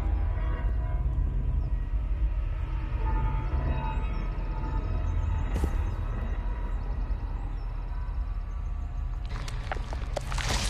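Tense horror film score: a deep, steady low drone under long held tones, with sharp noisy hits coming in just before the end.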